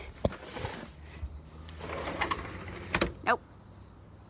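A door opening and closing: a sharp click just after the start, about a second of rumbling slide later on, then a sharp knock as it shuts.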